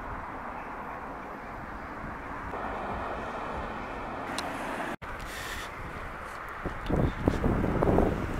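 Street ambience at a pedestrian crossing: a steady wash of traffic noise as a car drives past, cut by a momentary dropout about five seconds in, with louder low rumbling toward the end.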